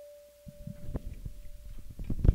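The last tabla stroke rings out: the dayan's single pitched tone fades away, gone near the end. From about half a second in, a handheld microphone is picked up and handled, giving soft scattered knocks and thumps.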